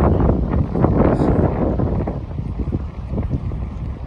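Wind buffeting the microphone: a loud, gusting low rumble that eases off about halfway through.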